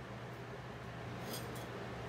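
Quiet room tone with a steady low hum, and a faint snip and paper rustle about a second and a half in as small scissors nick the paper backing of heat-fusible web on a fabric appliqué piece.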